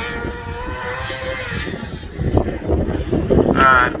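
Racing engine of an F600-class autograss car running at high revs, a steady, slightly rising whine for the first second and a half. After that it is mostly low rumbling and wind buffeting the microphone.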